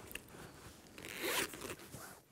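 A short rasping, zipper-like sound lasting under half a second, about a second in, among faint scattered handling noises.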